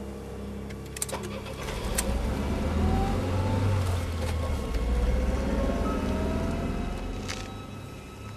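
Car engine running and pulling away, its pitch rising slowly as it accelerates, with a few sharp clicks about a second in. It fades near the end.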